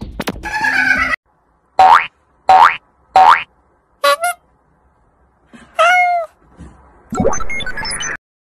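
Cartoon 'boing' sound effects: three quick upward-sliding boings about two to three seconds in and a shorter one near four seconds, after a brief stretch of music at the start. Near six seconds there is a single rising-then-falling pitched call.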